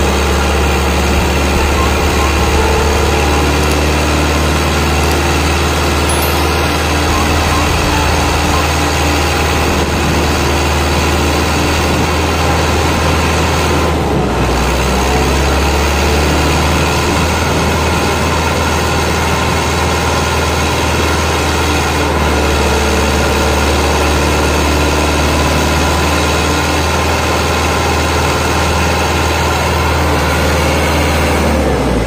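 HMT 5911 tractor's diesel engine running steadily at a low, even speed.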